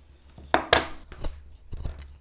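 Carving knife slicing into Ficus benjamina wood: two quick sharp cuts about half a second in, then a few lighter nicks.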